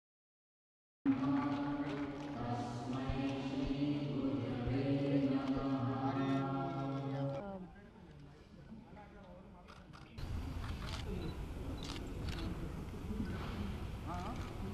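Voices chanting in long, steady held tones for several seconds. After a short lull, the noise of a crowded room comes in with quick camera shutter clicks.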